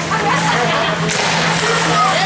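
Ice hockey play heard from rinkside: skates scraping and sticks working on the ice, with a sharp crack about a second in. Spectators' voices sound faintly underneath, over a steady low arena hum.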